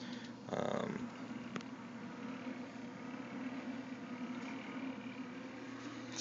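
Power inverter under heavy load giving off a steady low electrical hum with its cooling fan running, a fan that comes on once the load gets up to a certain point.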